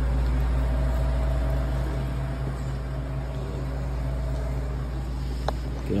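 Steady low hum with an even hiss and a faint thin whine that fades out partway through: the background noise of a large store. A single small click comes near the end.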